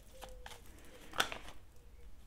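Oracle cards being handled and shuffled in the hands: faint rustling and ticking, with one sharper card snap a little over a second in.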